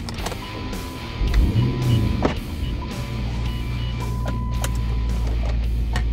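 Car engine cranking and catching about a second and a half in, then settling into a steady low idle. A sharp click sounds just after it catches.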